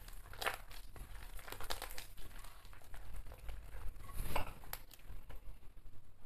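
A hand kneading and mixing a soft butter, sugar, ground-almond and egg-yolk mixture in a large glazed ceramic bowl: irregular squishing and rubbing strokes, the loudest a little past the middle.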